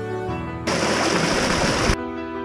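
Soft background music, interrupted about two thirds of a second in by just over a second of loud rushing water noise that cuts off suddenly.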